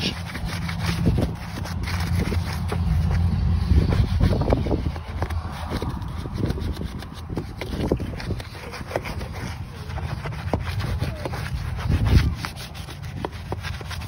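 Stiff-bristled wheel brush scrubbing a wheel and tyre covered in cleaner foam, in quick, irregular back-and-forth strokes.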